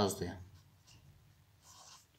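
Ballpoint pen writing on lined notebook paper: faint scratching strokes, the clearest one near the end.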